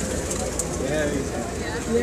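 People talking in the background, with no clear words, over a steady outdoor hum.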